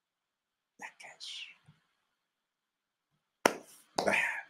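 A single sharp hand clap about three and a half seconds in, after a pause broken only by one soft, whispered word.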